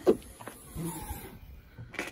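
Land Rover Freelander 2 tailgate being opened by hand: a short click of the latch releasing at the start, faint rustle as the tailgate lifts, and another short click at the end.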